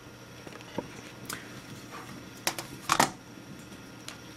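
Light handling noise of objects being moved on a desk: a few faint clicks, then two sharper knocks about two and a half and three seconds in.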